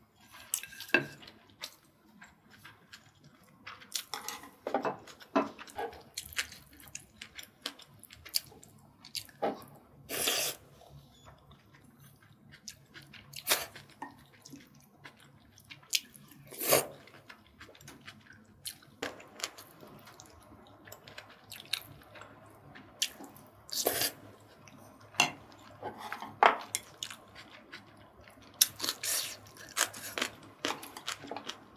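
Close-miked eating of braised short ribs: wet chewing and mouth sounds mixed with spoon and chopsticks clicking against the dish, in short separate bursts throughout.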